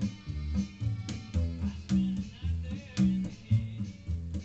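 Homemade upright washtub bass strung with string-trimmer line, plucked by hand in a steady rhythm of low notes, about two a second.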